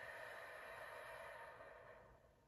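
A long, slow, faint exhale through the mouth, a deep relaxation breath that trails off near the end.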